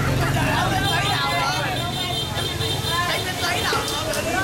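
Busy crowd chatter, many voices talking over one another, over a steady low rumble of motor traffic.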